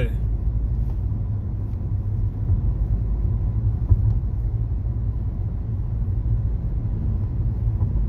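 Steady low rumble of a car on the move, heard from inside the cabin: road and engine noise. A single light knock comes about halfway through.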